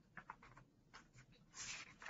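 Near silence with a few faint clicks and a brief soft rustle about one and a half seconds in, small handling noises close to the microphone.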